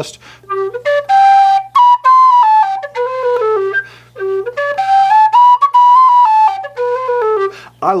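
A Humphrey low G whistle played in its lower octave: a short tune that climbs from the bottom notes up to the top of the octave and steps back down, played twice over.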